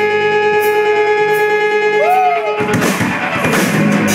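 Live rock band playing: electric guitar chords ring out and drone, with one note bending up and then down about two seconds in. About two and a half seconds in, the drums and the full band come in.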